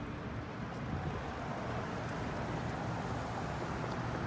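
Steady outdoor street noise: a low rumble of road traffic mixed with wind on the microphone.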